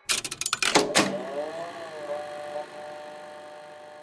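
Intro sound effect in the style of a tape machine: a quick run of mechanical clicks and clatter for about a second, then a faint tone that bends up and then down in pitch and fades away slowly.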